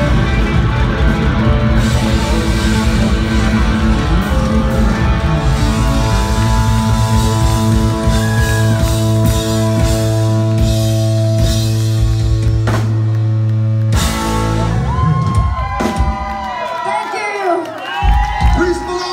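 Live rock band of drum kit, electric guitars and bass playing, settling into a long held chord that ends on a sharp final hit about 14 seconds in. Audience cheering and whooping follows in the last few seconds.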